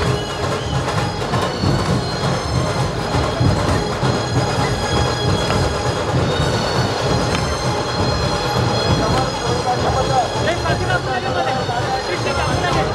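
Loud, continuous procession drumming, with deep drumbeats under a steady metallic ringing, typical of a dhol-tasha troupe with cymbals.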